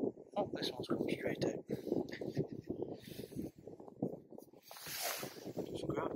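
Indistinct voice, too low to make out words, with a short burst of hiss about five seconds in.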